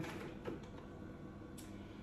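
Faint handling of a plastic flower pot: a soft knock about half a second in and a light click near the end.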